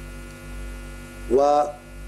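Steady electrical mains hum, a low buzz with many even overtones, in the microphone and broadcast sound, broken by a single short spoken word about a second and a half in.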